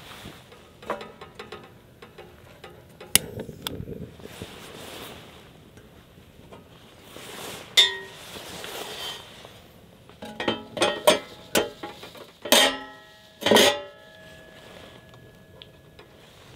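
Metal clinks and clanks from a Weber Go-Anywhere gas grill as its lid and cooking grate are handled and set in place. A quick run of clinks comes about two-thirds in, then two loud clanks near the end that ring on.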